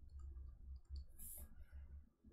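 Faint clicks and soft low knocks of a stylus tapping and moving on a writing tablet, with a short hiss a little past the middle.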